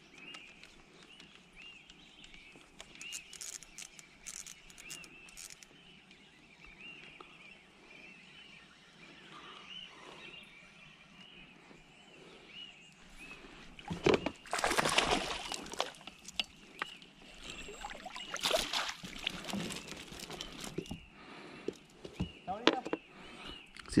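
Water splashing and sloshing in loud bursts as a hooked trout is brought alongside an inflatable boat and netted. Before that, a bird repeats a short high call about twice a second.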